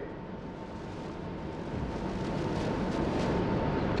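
Steady room noise of a large hall: an even hiss with a faint, steady hum, slowly growing louder.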